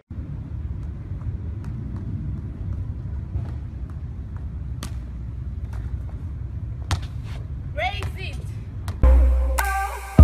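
Outdoor amateur phone-video audio: a low, steady rumble like wind on the microphone with a few faint taps, and a short rising shout near the end. About a second before the end, loud electronic music with a heavy bass beat cuts in.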